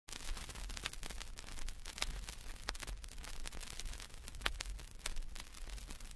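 Vinyl record surface noise before the music starts: scattered clicks and crackle over a steady low hum and hiss.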